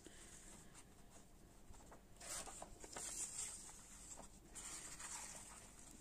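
Faint rustling and sliding of paper as vintage postcards and loose paper ephemera are handled and shuffled, swelling a little twice.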